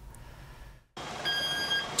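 A high electronic warning beep, held at one steady pitch with overtones, starts about a second in over the low engine and yard noise of trucks. It is the kind of warning beeper fitted to trucks and yard vehicles at a waste sorting site. Before it there is only a brief, faint lull.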